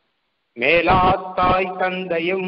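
A man's voice chanting a verse in a level, held pitch. It starts about half a second in, after a short silence.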